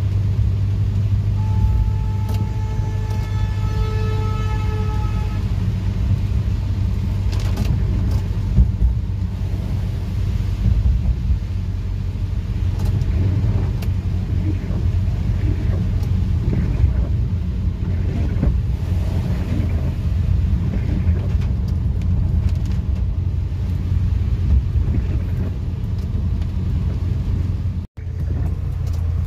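Steady low rumble inside a moving car's cabin, from the engine and the tyres on a wet, flooded road, with heavy rain beating on the car.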